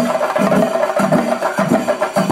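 Chenda drums played in a loud, fast, unbroken stream of strokes: a chenda melam ensemble.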